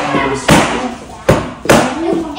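Kicks striking a handheld taekwondo kick paddle: three sharp smacks, one about half a second in and two close together near the end.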